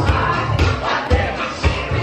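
Loud dance music with a steady thumping beat, and a crowd of dancers singing and shouting along.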